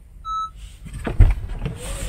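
A single short electronic warning beep from a Honda CR-V's dashboard. It sounds when the push-start button is pressed and the smart key is not detected. Handling noise and knocks follow, with a loud thump a little over a second in.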